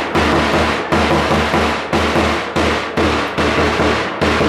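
Loud backing music with a steady, heavy drum beat.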